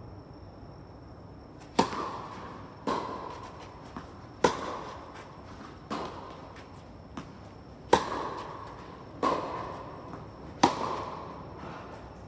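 A tennis rally: seven racket strikes on the ball, about one every one and a half seconds, with louder and fainter hits alternating, each echoing in the indoor hall. A couple of faint ball bounces come between them.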